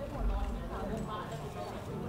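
Indistinct voices talking at conversation level, with a brief low bump shortly after the start.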